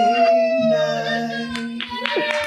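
A voice howling one long, high, held note that sags slightly in pitch and weakens after about a second, over a steady low drone.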